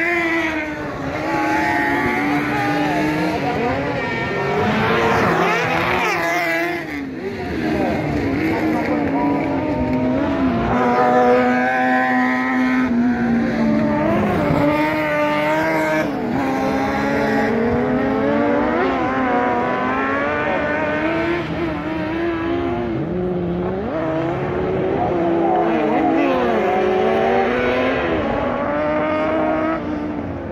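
Several kart cross buggies with high-revving motorcycle engines racing on a dirt track, their engines repeatedly rising and falling in pitch as they accelerate, shift and slow through the turns.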